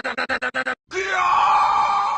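Uzi-type submachine gun firing a rapid full-auto burst of about ten shots a second, which stops under a second in. It is followed by a person's long, drawn-out yell.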